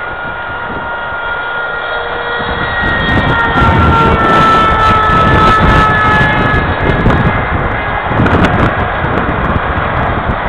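Electric motor and propeller of a foam RC F-22 model jet in flight: a high whine that grows louder over the first few seconds as the plane comes nearer, its pitch drifting slightly, then thins out after about seven seconds. Gusty wind rumbles on the microphone throughout.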